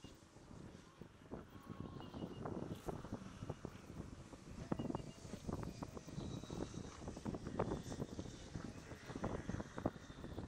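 Small waves lapping and slapping irregularly against the kayak hull, over a low rumble of wind on the chest-mounted microphone; it grows louder after about the first second.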